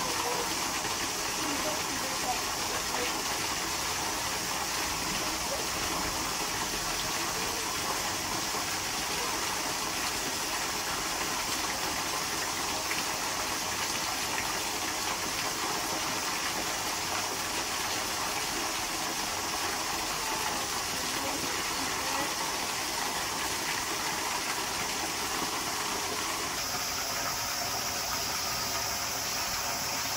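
Narrow waterfall splashing steadily onto rocks, a constant rushing of water.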